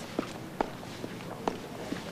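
Footsteps on a hard floor as a woman walks away, a few light steps about half a second apart.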